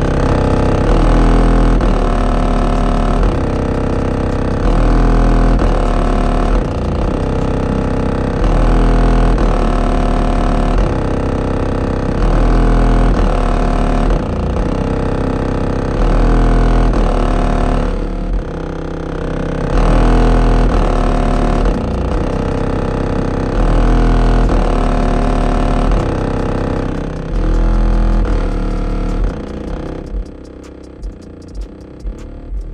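Bass-heavy music played loud through a car audio subwoofer system, heard from outside the vehicle. Long, very deep bass notes are held for about two seconds and come back every few seconds over the rest of the track.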